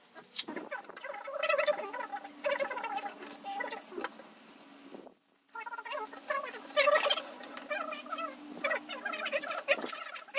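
Birds calling repeatedly over a steady low hum. The sound drops out briefly about five seconds in.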